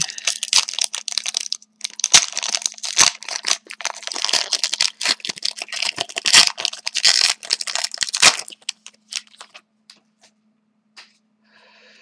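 Foil wrapper of a Panini Luxury Suite hockey card pack being torn open and crumpled in the hands, a dense crackling crinkle that thins to a few clicks and stops about nine seconds in.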